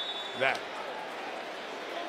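A referee's whistle: one long, steady, high blast that stops a little under a second in, over a low murmur of stadium crowd noise.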